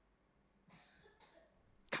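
A man's single short, sharp cough near the end, after a faint breath.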